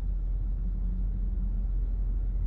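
Steady low rumble of a stationary car, heard from inside the cabin, with a faint hum in the middle.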